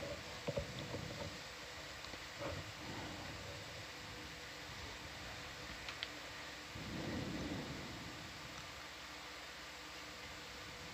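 Quiet control-room background: a steady hiss with a faint electronic hum. There are a few soft low rumbles, the longest about seven seconds in, and small clicks about half a second and six seconds in.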